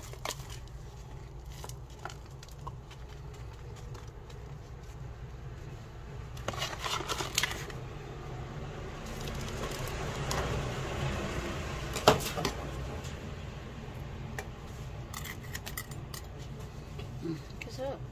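Gritty potting soil being scooped with a plastic scoop and pushed and trickled into the gaps of a broken ceramic jar. The sound is soft scraping and pouring with scattered light clicks and taps, the sharpest about twelve seconds in, over a steady low background rumble.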